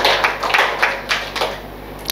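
Soft, breathy laughter: a few irregular bursts that fade away over about a second and a half.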